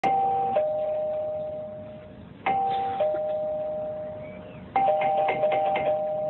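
Doorbell ding-dong chime rung three times, about two and a half seconds apart, each two-note chime dying away; a quick run of short clicks sounds over the third ring. Someone is standing outside wanting the door opened.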